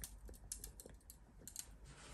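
Near silence with a scatter of faint small clicks and ticks as thick egg custard is poured in a thin stream from a glass measuring jug into an aluminium mould.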